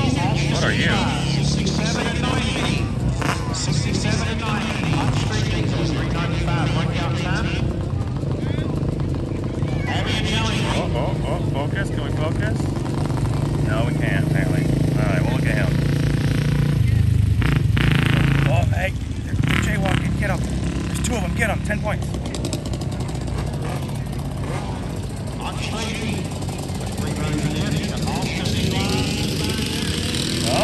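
Small off-road engines of ATVs and dirt bikes running on a dirt track, loudest as a quad passes a little past halfway and then dropping off suddenly, with a crowd's chatter throughout.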